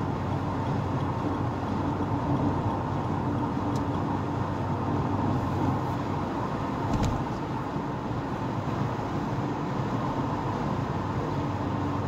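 Steady in-cabin noise of a car driving at road speed: a constant engine and drivetrain hum mixed with tyre and road noise. Two faint clicks come about four and seven seconds in.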